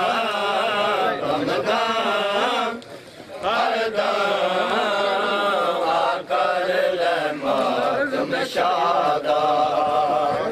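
Men chanting a noha, the Muharram lament, in a loud melodic line, with a short breath pause about three seconds in.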